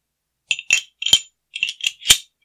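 Steel parts of a Beretta PX4 Storm pistol, the barrel and its locking block, clinking and clicking metal on metal as they are fitted into the slide: about six sharp, ringing clinks in quick succession, starting about half a second in.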